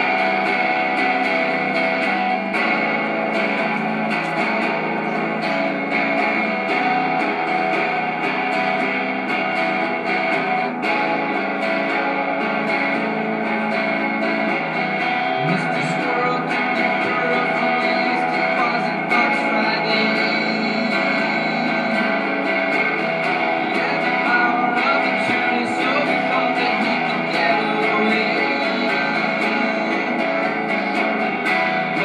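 Electric guitar played live through small amplifiers and effects, with sustained, layered notes at a steady level.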